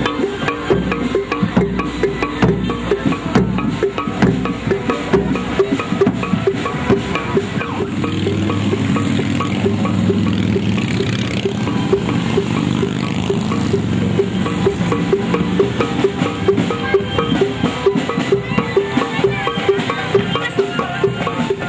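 Procession gamelan percussion: small hand-held gongs struck in a steady, quick repeating beat over a large barrel drum. A low engine hum from motorbikes rises under it in the middle.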